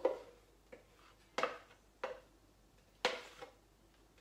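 A plastic blender jug held upside down over a bowl while thick hummus is worked out of it with a spatula, giving four short sharp knocks spaced about a second apart as the utensil and jug strike.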